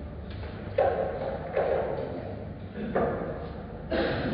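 Pool balls knocking in a reverberant hall: several sharp clacks at irregular spacing, the loudest about a second in, over a steady room hum.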